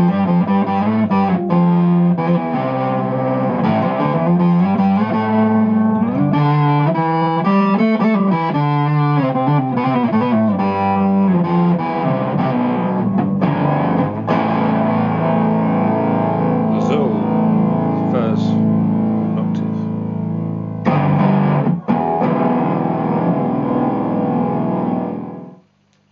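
Electric guitar played through a DigiTech iStomp running the XUL pedal, an octave-down fuzz: distorted riffs and held notes with a thick low octave under them. The playing dies away about a second before the end.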